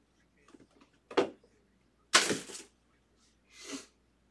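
Rustling and scraping of a foam insert and cardboard box as a cased card is lifted out. A few soft clicks, a short scrape about a second in, a longer, louder rasp about two seconds in, and a shorter one near the end.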